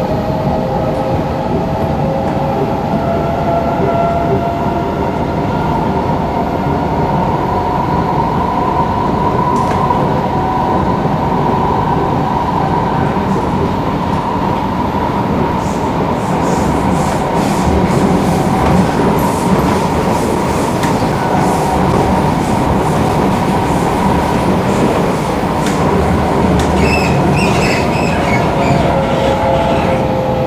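Singapore MRT electric train running at speed, heard from inside the carriage: a steady rumble of wheels on track under a motor whine that slowly shifts in pitch. From about halfway, with the train running alongside a trackside noise barrier, sharp rattling clicks join in, and near the end there is a brief high squeal from the wheels.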